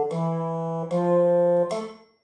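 An instrument with a sustained, reedy tone, most likely an electronic keyboard, plays held notes. Each new note starts about every three-quarters of a second without gaps. The notes serve as the pitch and lead-in for a bass-clef sight-singing exercise in F major and D minor.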